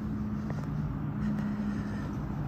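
A steady low hum with held low tones that shift in pitch, and a few faint ticks over it.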